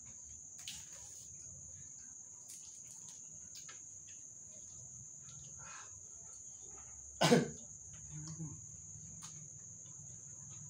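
Steady high-pitched chirring of crickets, with faint small clicks and rustles of eating. A single loud cough about seven seconds in.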